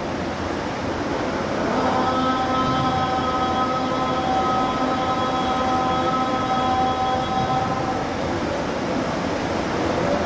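Quran recitation: a voice holds one long, steady chanted note from about two seconds in until about eight seconds in, over a constant hiss of room and recording noise.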